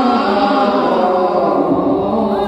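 A group of men chanting naam kirtan together, many voices singing a devotional hymn at once.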